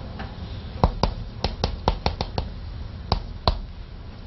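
Chalk tapping against a blackboard as Chinese characters are written stroke by stroke: about ten sharp taps, quick and uneven, mostly between one and three and a half seconds in, over a low steady room hum.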